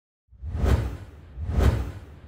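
Two whoosh sound effects of an animated logo intro, about a second apart, each swelling and fading away with a deep low rumble beneath it.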